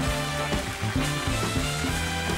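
Live studio band playing an upbeat walk-on tune, with a steady drum beat about four hits a second under a moving bass line.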